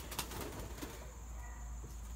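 Faint sounds of pigeons inside a wire coop, with a brief flutter of wings near the start.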